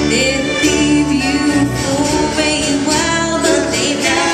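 Live acoustic bluegrass band playing, with fiddle, dobro, mandolin, acoustic guitars and bass, the notes gliding and held in a steady, continuous passage.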